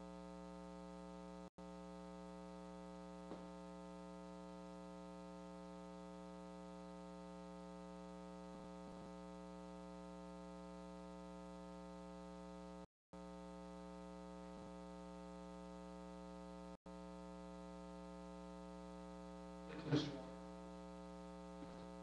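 Low, steady electrical mains hum with a ladder of overtones on the audio feed. A few faint clicks are heard, and a short, louder sound comes near the end.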